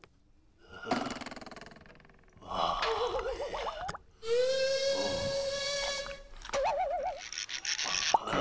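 Exaggerated zombie vocal noises: a rasping breath about a second in, a wavering warbling groan, then a long strained cry held steady for nearly two seconds, another short warble and a hissing breath near the end.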